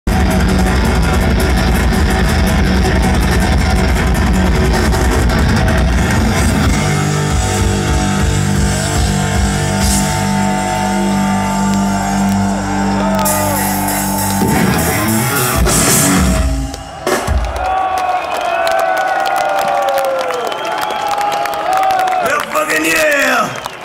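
Heavy metal band playing live at high volume: distorted bass guitar, guitar and drum kit through a big PA, picked up by a camcorder in the crowd. The song winds up in a flurry and stops sharply about three-quarters of the way through, after which crowd cheering is heard.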